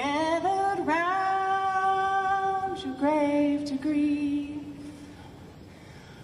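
A woman singing unaccompanied with long held notes: one held until about three seconds in, then a lower one that fades out about five seconds in.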